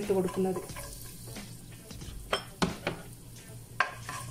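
Chopped garlic sizzling gently in hot oil in a nonstick wok, with a few sharp clicks of a spatula against the pan in the second half.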